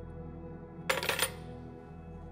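A key dropped into a box, clinking sharply two or three times about a second in, over quiet, steady background music.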